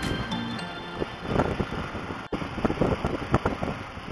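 Wind buffeting the microphone of a scooter riding at about 72 km/h, with the vehicle's running noise underneath; the sound drops out for an instant a little over two seconds in.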